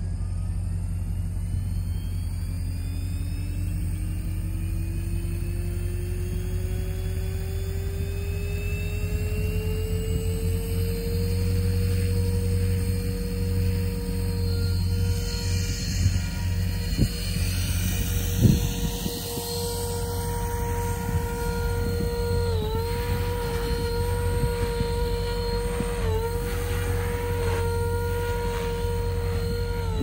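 Electric 500-size RC helicopter (MSH Protos 500) spooling up: the motor and rotor whine rises steadily in pitch over about ten seconds to headspeed, then holds level. It dips briefly twice under load. A steady low rumble runs underneath, with a few knocks and a thump just past the middle.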